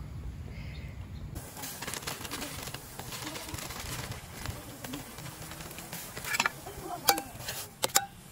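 A few sharp clinks near the end, a metal spoon knocking against the steel pot on a portable camp stove.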